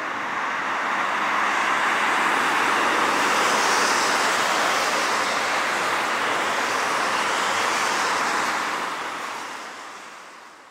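A steady rushing noise with no distinct tones, swelling a little through the middle and fading out over the last second or so.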